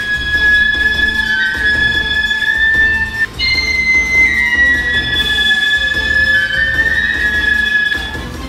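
A transverse flute playing a slow melody of long held notes, stepping up and down, with a brief break a little over three seconds in before the tune jumps higher and then drifts back down.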